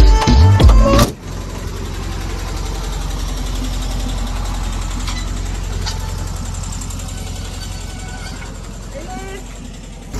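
Air-cooled Volkswagen Type 2 camper van engine running with a steady low rumble that slowly fades toward the end. Music cuts off about a second in.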